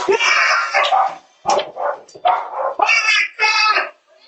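Dogs barking in a run of short, loud, high-pitched bursts, mixed with a man's shouting.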